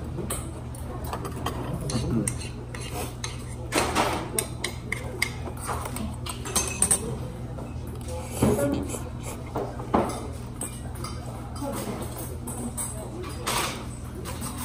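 Metal spoon and chopsticks clinking and scraping against a metal pot and bowl while eating, with several sharp clinks scattered through, over a steady low hum.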